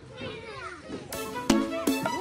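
Cartoon children's voices giggling and calling out during an instrumental break. About halfway through, the children's-song backing music comes back in with a few short, sharp notes.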